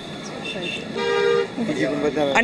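A vehicle horn gives one short, steady honk about a second in, lasting about half a second, over street background.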